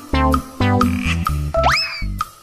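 Bouncy children's background music with repeated plucked notes over a bass line. About one and a half seconds in, a cartoon sound effect: one quick rising whistle-like glide.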